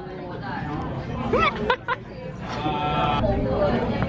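A person laughing in wavering, drawn-out bursts over the chatter of a busy restaurant dining room.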